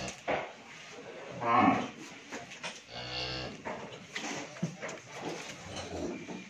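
Cattle mooing in a shed: two calls, a louder one about a second and a half in and a shorter one about three seconds in.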